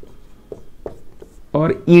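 Marker pen writing on a whiteboard: a few short, faint strokes. A man's voice starts speaking near the end.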